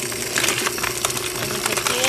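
Osterizer 10-speed blender motor running on its low chop setting, with ice cubes and frozen fruit rattling irregularly against the blades and jar.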